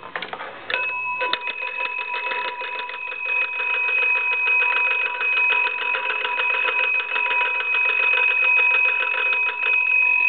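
Monarch wooden wall crank telephone's two brass bell gongs ringing steadily as its hand crank (magneto) is turned, the clapper striking the gongs rapidly. The ringing starts about a second in, after a couple of clicks from the crank.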